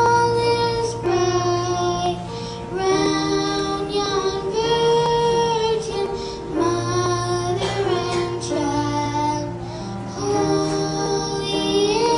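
A choir of young children singing a song together in long held notes, with a keyboard accompaniment underneath.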